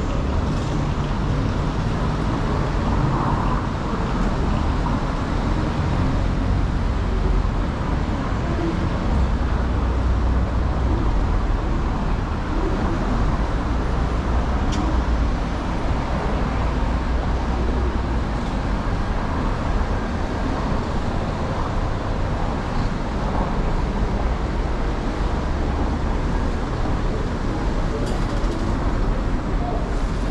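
Steady road traffic: cars passing with a continuous low rumble and no breaks.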